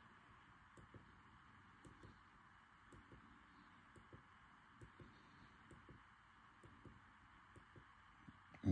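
Near silence: faint room tone with small, soft clicks at irregular intervals, about one or two a second.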